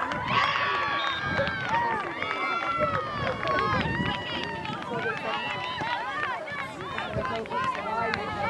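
Several voices shouting and calling across an open soccer field, many overlapping at once, with no clear words.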